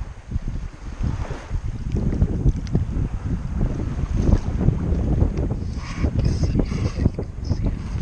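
Wind buffeting the microphone, a loud, uneven low rumble, with a short rush of higher hiss about six seconds in.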